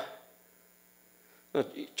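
A short pause in a man's speech, filled by a faint, steady electrical mains hum; his voice trails off at the start and comes back near the end.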